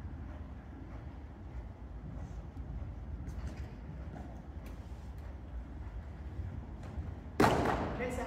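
A steady low rumble with a few faint knocks, then a sudden loud thump near the end.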